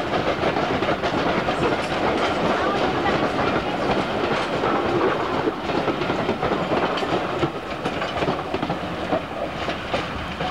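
A steam-hauled rake of passenger coaches rolling past close by, the wheels clattering over the rail joints. The clatter eases a little near the end as the last coach draws level.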